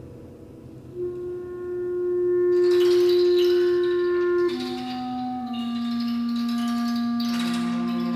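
Bb clarinet holding a long note that swells in loudness, then dropping to a lower held note about halfway through. Near the end a cello joins with a lower bowed note underneath.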